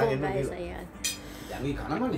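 Spoons and forks clinking against plates as people eat, with a sharp clink about a second in and a few spoken words around it.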